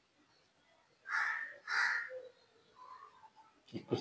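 A crow cawing twice in quick succession, two harsh calls a little over a second in.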